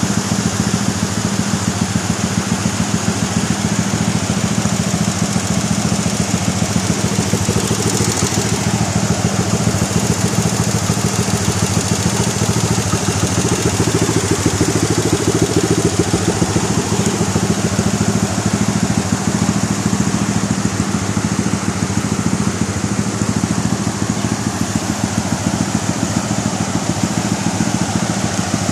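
A motorcycle engine running at a steady pitch, over a steady rushing noise.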